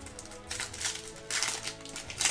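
Foil Yu-Gi-Oh booster pack wrapper crinkling and cards being handled, in a few short rustling bursts over quiet background music.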